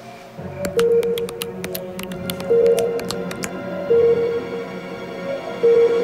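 Suspenseful cartoon underscore with a sustained note that swells about every second and a half, and a run of sharp quick clicks in the first half: the bat character's echolocation sound effect.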